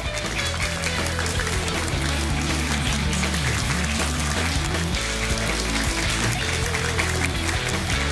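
Upbeat closing theme music of a TV quiz show, with a steady bass line, playing under the end credits.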